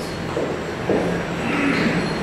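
Steady background noise with faint, indistinct voices in the room.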